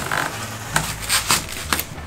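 One-inch R5 expanded-polystyrene rigid foam insulation board pushed by hand into a cargo trailer wall, giving several short scratchy rubbing sounds as its edges are tucked in.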